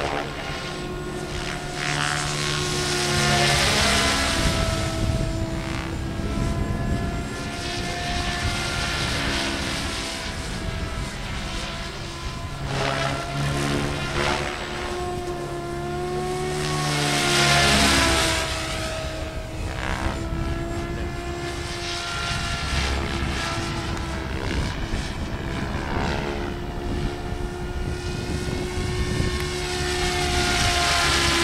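Goblin 700 radio-controlled helicopter flying: a steady whine from its motor and main rotor, the pitch rising and falling as it flies, swelling loudest a little past halfway.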